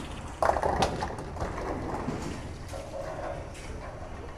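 Bowling ball hitting the lane with a thud about half a second in, then rolling down the lane with a steady rumble.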